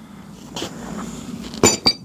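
Two sharp metallic clinks in quick succession near the end, ringing briefly: metal parts knocking together as a fitting on a steel sandblasting pot is handled.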